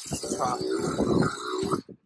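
A man's voice grunting and growling wordlessly in reply, with two drawn-out low grunts.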